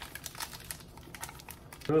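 Cadbury Dairy Milk bar's wrapper and inner foil crinkling as the bar is unwrapped by hand: a run of small, irregular crackles.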